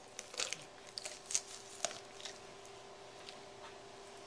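A raw chicken leg being pulled off the carcass by hand: faint crackling and tearing as the skin and joint give way, in a few short bursts during the first two seconds.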